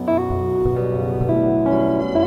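Jazz quartet playing live, with the digital piano's chords to the fore over double bass, drums and electric guitar.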